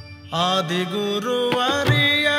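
Indian devotional music between sung lines. After a brief lull, a sustained melody line with bending, gliding notes enters about a third of a second in over a steady drone, and tabla strokes come back near the end.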